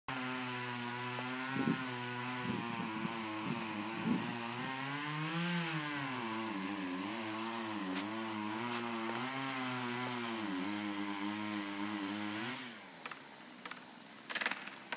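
Chainsaw engine running at high speed, its pitch dipping and recovering as the chain bogs under load in the cut through a poplar trunk, then shutting off about a second before the end.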